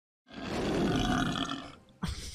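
A long, loud belch from a man in a film soundtrack, starting about a quarter second in and lasting about a second and a half before fading out.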